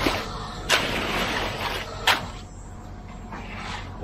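Wet concrete being raked and scraped, with two sharp knocks about a second and a half apart over a steady low rumble of machinery.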